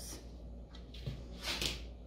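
Dog food being spooned into bowls: a few short, faint scrapes, the loudest about one and a half seconds in.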